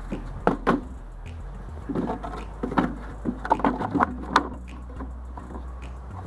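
Wooden pollen-trap frames and screened trays being handled and set against each other: a scattered series of light wooden knocks and clacks over a steady low rumble.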